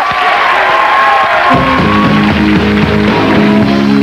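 Studio audience applauding and cheering, then the house band starts playing about a second and a half in.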